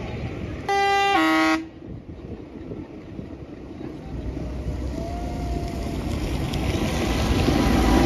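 A vehicle horn sounds once, briefly, a higher note dropping to a lower one. Then a Fendt 724 tractor's six-cylinder diesel engine grows steadily louder as it approaches and passes close by.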